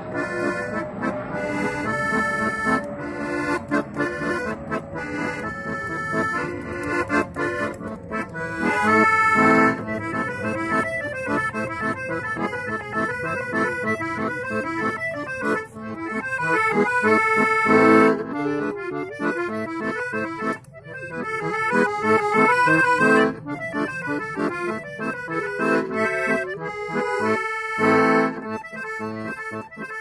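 Piano accordion playing a Russian folk tune: a quick melody over sustained chords, with a few louder swells along the way.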